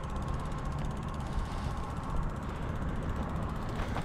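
Bicycle rolling along, with a low rumble of tyres and wind and a fast, even ticking of the rear hub's freewheel as it coasts.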